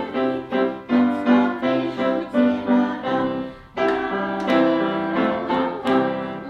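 Piano music playing a steady rhythm of repeated chords, with a short break about four seconds in.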